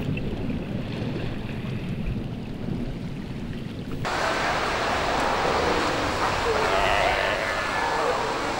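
Ocean water sound: a low, muffled rush for the first half, then from about four seconds in a brighter, fuller rush of waves and splashing.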